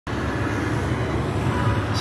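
A motor running steadily with a low hum, over an even wash of background noise.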